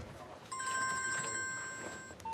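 Mobile phone ringing for an incoming call: a ringtone of several held tones starts about half a second in and slowly fades.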